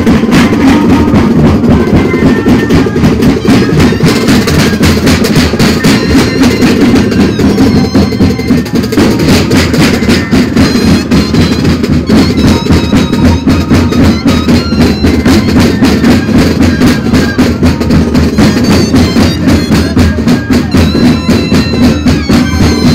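Moseñada band playing loud and without a break: a chorus of moseño flutes over a steady drum beat.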